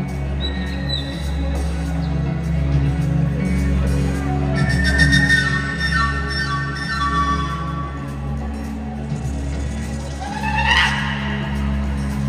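Live band music: a steady low bass and keyboard drone, with a run of high notes stepping downward in the middle and a quick rising call near the end.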